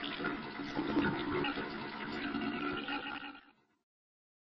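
Sound effect of water draining, standing for treatment solution being drained from a pressure-treatment cylinder back into its storage tank. It fades out about three and a half seconds in.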